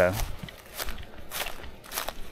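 A few footsteps crunching on dry leaf litter and gravel, spaced unevenly in the second half.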